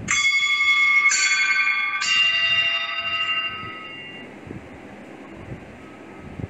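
Three singing bowls struck one after another, about a second apart, each ringing with several overtones at once. The ringing overlaps and fades away about four seconds in.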